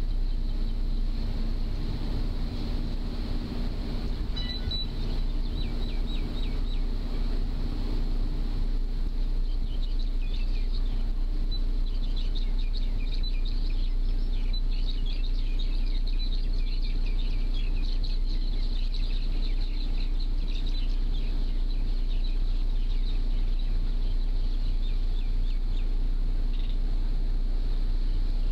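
A ferry's engine running with a steady low drone as the boat cruises. From about a third of the way in, birds chirp rapidly in quick high notes for several seconds.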